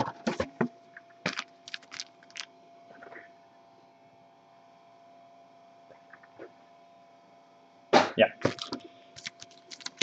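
Foil-wrapped trading card packs sliding out of a cardboard blaster box and tapping down onto a glass tabletop: a quick run of clicks and crinkles in the first couple of seconds. Then a faint steady hum, and the packs are handled and stacked again with more clicks near the end.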